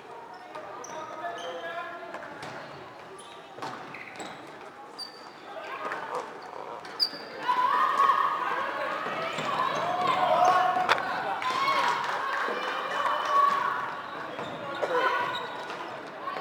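Floorball play on an indoor sports floor: rubber shoe soles squeaking in short high chirps, with a few sharp clacks of a stick on the plastic ball about halfway through. Players' voices call out loudly through the second half.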